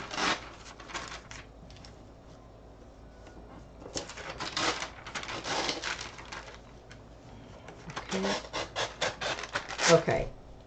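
Paper being torn along the edge of a ruler to get a straight edge, in three drawn-out rips: one at the start, a longer one from about four seconds in, and another near the end.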